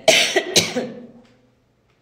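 A woman coughing into her fist: two sharp coughs about half a second apart, fading out within about a second and a half.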